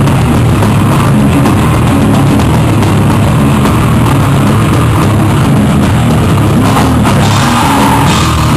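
Loud live rock band playing, with a drum kit driving the song.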